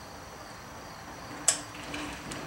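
Low, steady background hiss with a faint high whine, broken by one sharp click about a second and a half in.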